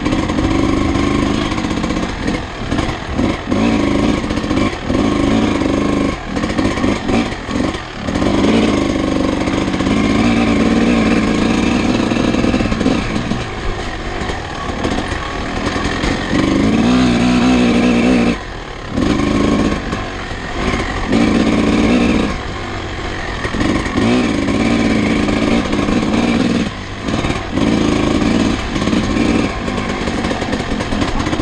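Vintage off-road motorcycle engine being ridden hard on a trail, revving up and falling back over and over as the throttle opens and shuts. There is a brief drop in the engine sound about two-thirds of the way through.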